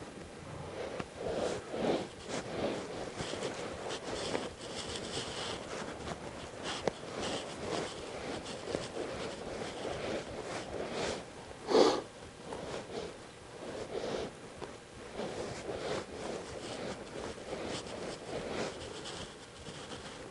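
Horse breathing and blowing through its nostrils in irregular short bursts, with one loud snort about twelve seconds in.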